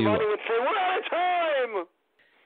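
Speech only: a person talking, with the voice stopping shortly before the end.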